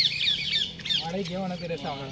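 Birds chattering: a quick run of short, high calls that fades out about a second in.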